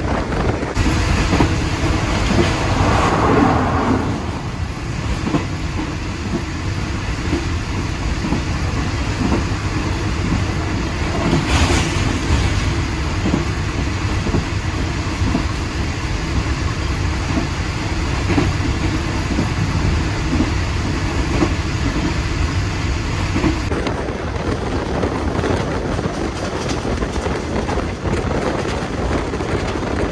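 State Railway of Thailand passenger train running along the track at speed, heard from an open carriage window: the steady running noise of wheels on rail, with air rushing past.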